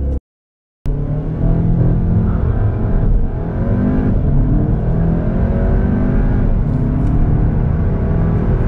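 Skoda Octavia RS's 2.0 TSI turbocharged four-cylinder petrol engine at full throttle from a launch-control standing start, heard inside the cabin. The sound comes in just under a second in, and the engine note climbs in pitch through the gears, dropping back at each quick DSG upshift.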